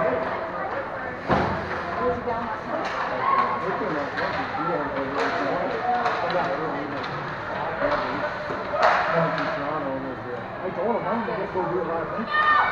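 Ice hockey play in a rink: a steady blur of indistinct, overlapping voices from spectators and players, with several sharp clacks of sticks and puck, the sharpest about a second in and near nine seconds in.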